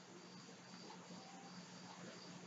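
Near silence: faint room tone with a low steady hum and a faint high-pitched tone pulsing on and off.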